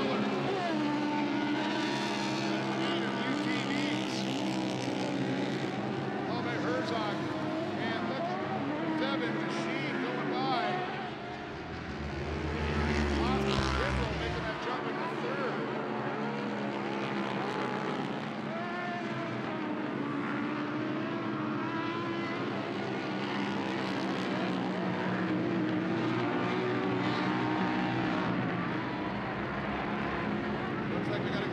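Several UTV race engines running hard together, their pitch climbing and falling as they rev and shift. About twelve seconds in, a deeper rumble swells for a couple of seconds.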